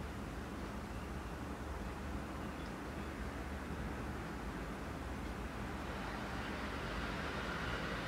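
Steady background hum and hiss, strongest at the low end, with no distinct events.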